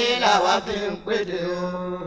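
Fuji music vocal chant: a singing voice whose pitch bends from line to line, breaks off briefly about a second in, then holds a steady note.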